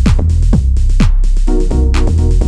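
Live house music from an Elektron Digitakt drum machine and a Novation Peak synthesizer. A four-on-the-floor kick drum plays about two beats a second, with hi-hats between the kicks, over a steady bass and a held synth chord that gets louder near the end.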